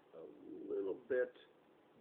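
A man's voice making a drawn-out, wordless vocal sound, then a short syllable just over a second in.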